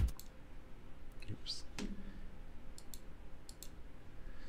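A computer mouse clicking several times in a quiet room, with two quick pairs of clicks in the second half. A short, low voice sound comes in the middle.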